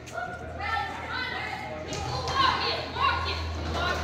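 Several people's voices talking and calling out in the background of a large indoor hall, over a steady low hum.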